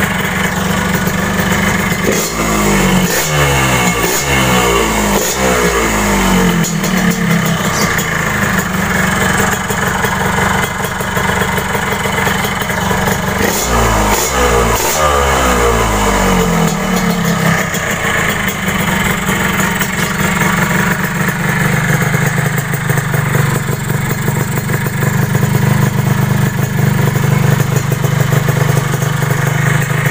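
Yamaha RX-King's ported two-stroke single-cylinder engine idling, blipped several times in quick succession about two seconds in and again around fourteen seconds in, each rev rising and falling in pitch before it drops back to idle.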